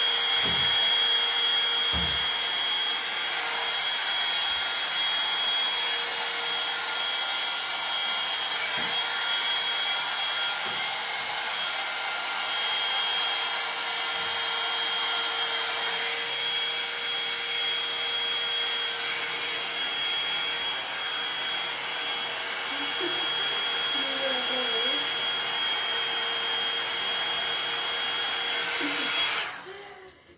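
Hot-air brush (hair dryer brush) running steadily: a rush of blown air with a thin high whine and a lower hum, with a few soft knocks as it is handled. It is switched off just before the end.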